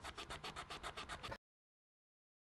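Marker pen tip scratching quickly back and forth on card, faint, about eight strokes a second. It cuts off suddenly about a second and a half in.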